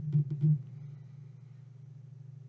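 A few short strokes of an Expo dry-erase marker writing on a whiteboard in the first half second, then a steady low hum.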